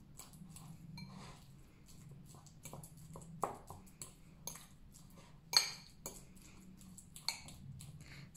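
A fork mashing avocado in a ceramic bowl: irregular soft taps and clinks of the fork against the bowl, with two louder clinks, one about three and a half seconds in and one about five and a half seconds in.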